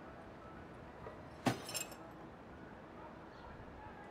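A white cardboard box is tossed over an iron railing and lands with one sharp clattering hit about one and a half seconds in, followed by a few quick clinks, against a quiet street background.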